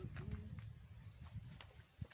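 Faint, irregular footsteps of people walking over rough, vegetated ground, over a low rumble on the phone's microphone.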